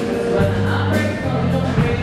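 Background music with choral singing: sustained held notes over a steady bass line that shifts pitch a couple of times.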